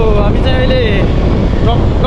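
Heavy wind rumble buffeting the microphone while moving along a road, with a man's voice talking over it.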